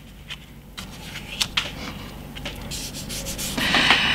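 Hands rubbing and pressing freshly glued paper card flat on a cutting mat: a light, papery rubbing with a few small taps, louder for a moment near the end.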